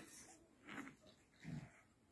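Faint sounds from puppies wrestling at play: two short vocal noises, under a second apart, over near silence.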